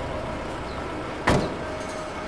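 A single sharp thud about a second in: the door of a jeep being shut as the driver gets out. A faint steady hum runs underneath.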